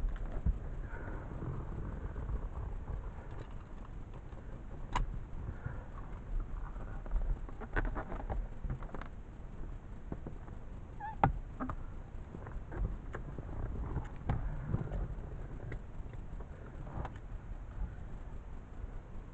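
Scattered clicks, knocks and rustles of handling inside a small aircraft's cabin, over a steady low rumble; the engine is not running.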